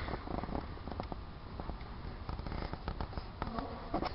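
Irregular light knocks and scuffs over a low steady rumble: a saddled horse and its handler walking on arena footing, with hand-carried plastic jump blocks knocking.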